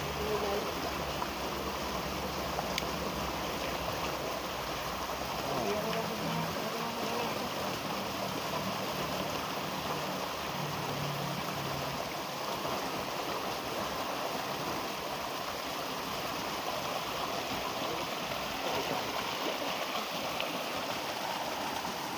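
Shallow river rushing over rocks around the waders: a steady, even rush of water.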